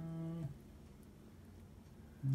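A short, steady hummed "mm" from a person, lasting about half a second, followed by quiet room tone.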